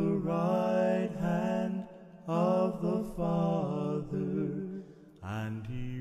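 A slow song sung by male voices in harmony over a low held note, phrase by phrase, with short breaks between phrases about two, four and five seconds in.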